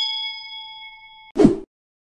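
Notification-bell 'ding' sound effect ringing on and fading, then cut off abruptly about a second and a half in. A short, loud burst of noise follows right after.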